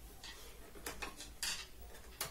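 A harmonium being handled as it is made ready to play: a few sharp clicks and knocks of its wooden case and fittings, the loudest about one and a half seconds in.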